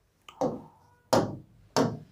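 A stylus tapping three times on an interactive display's touch screen, each a short, sharp tap, evenly spaced about two-thirds of a second apart.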